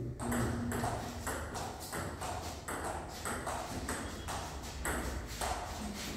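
Table tennis rally: the ball clicks off the bats and the table in a steady back-and-forth, about two to three hits a second.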